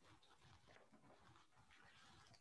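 Near silence: a deliberate pause with only faint background hiss.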